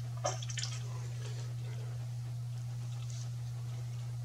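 A few faint clicks and rubs of hands handling a plastic push-fit tee and PEX tubing, over a steady low hum.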